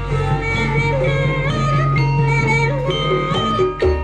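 Jaranan ensemble music: a sustained melody with bending notes over a steady low hum, with percussion, changing sharply just before the end.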